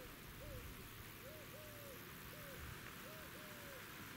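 A dove cooing a repeated three-note phrase, the middle note the longest, about every two seconds, faint over a steady outdoor background hiss.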